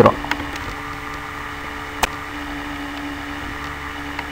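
Steady background hum and hiss with a held low tone, with one brief sharp click about two seconds in.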